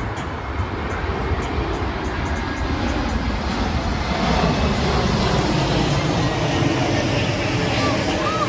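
Distant engine rumble that swells over the second half and then holds steady, with faint voices underneath.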